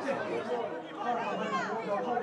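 Several voices shouting and calling out over one another during a football match, with no single clear speaker.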